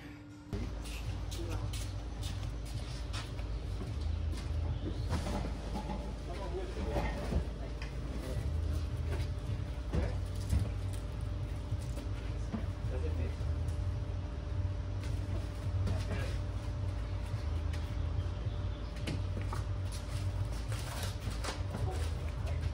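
Men loading household items into a moving container: scattered knocks and bumps of boxes and furniture, with faint men's voices over a steady low rumble that starts suddenly about half a second in.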